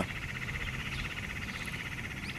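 Steady, fast-pulsing trill of insects in the background, holding an even pitch with no break.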